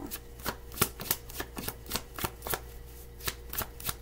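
A tarot deck being shuffled by hand: a quick, irregular run of soft card clicks and slaps.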